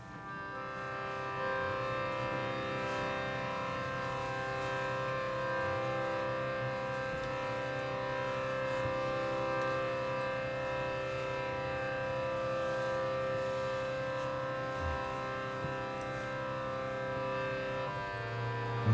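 Harmonium holding a sustained chord, a steady drone that swells in over the first second or two and then holds unbroken, its upper notes wavering slowly.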